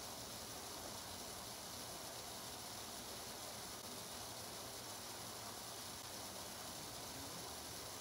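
Steady, even hiss with a faint low hum underneath: background room tone, with no distinct event.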